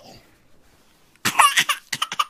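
A toddler crying: after about a second of quiet, one short, loud sobbing burst.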